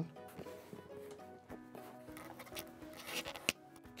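Quiet background music with steady held notes. A few faint clicks and taps come near the end, from hands handling a cardboard shipping tube with a hobby knife.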